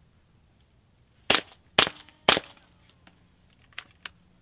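Three suppressed shots from a semi-automatic .22LR rifle fired through a home-built aluminum monocore suppressor, about half a second apart, each a sharp crack with a short tail. The noise of the semi-auto action cycling and gas leaking out adds to each shot.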